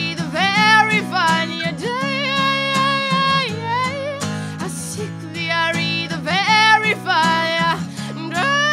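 A woman singing a slow melody with long held notes, accompanied by a strummed acoustic guitar.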